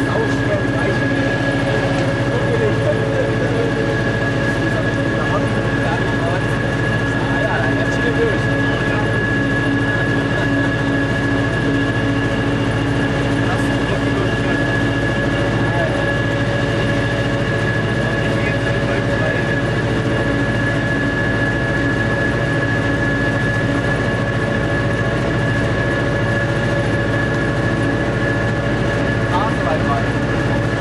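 Inside the cab of a Nohab diesel-electric locomotive hauling a heavy freight train: the diesel engine drones steadily, with a steady high whine above it, unchanged throughout.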